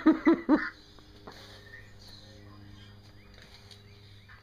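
A man laughing in a few short bursts, which stop about half a second in; after that only a faint steady hum, with a few faint short chirps near the end.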